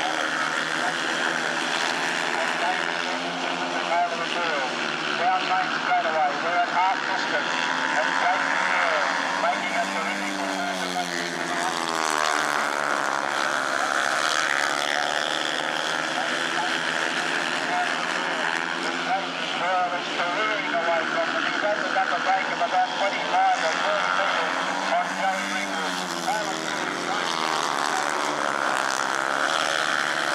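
Several speedway solo motorcycles racing round a dirt oval together. Their engines rise and fall in pitch over and over as the riders shut off into the bends and open up again on the straights.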